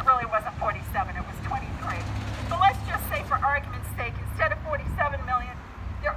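A woman speaking through a handheld megaphone, over a steady low rumble of road traffic.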